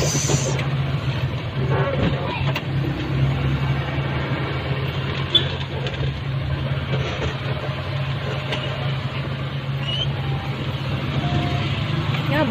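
Motor vehicle running steadily, a low engine drone under road noise.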